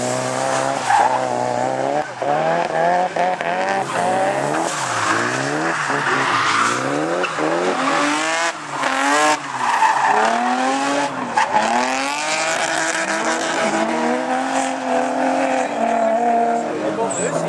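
Drift car's engine revving hard, its pitch climbing and dropping again and again as the driver works the throttle through the slide, with tyres squealing and skidding on the tarmac.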